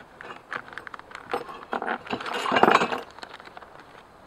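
Small metal hardware clinking and rattling as a bag of parts is handled, with scattered clicks and a longer, louder rattle about two seconds in.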